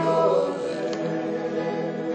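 A small group of singers singing a gospel song about heaven in harmony, holding long sustained notes.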